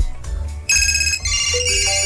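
A short electronic jingle: a melody of high electronic notes stepping from one to the next begins about two-thirds of a second in, after a voice breaks off.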